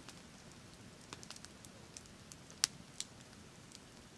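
Wood campfire crackling quietly, with scattered sharp pops and one louder snap about two and a half seconds in.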